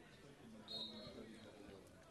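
A referee's whistle blows one short, faint, high blast about a second in, signalling that the free kick may be taken. Faint distant voices sit underneath.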